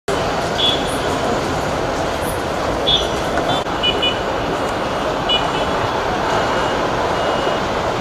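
A group of girls' voices shouting and chanting together over a steady rushing noise, with short high chirps scattered through.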